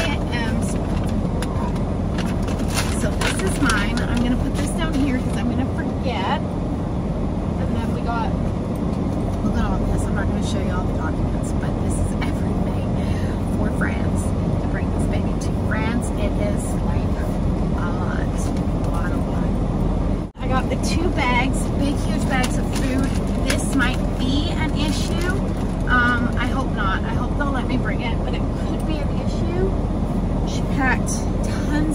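Steady low rumble of vehicle cabin noise, with paper and a gift bag rustling as things are taken out. There is a brief cut in the sound about two-thirds of the way through.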